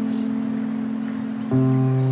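Background instrumental music: a held note fades slowly, then a new, lower chord is struck about one and a half seconds in.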